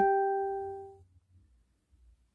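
A single pitched chime tone ringing and fading out about a second in, the last of three short tones of the same pitch; after it there is near silence.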